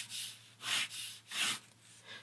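Pen drawing three quick strokes across paper, a dry scratchy rub with each pass, as it lays in a long ground line.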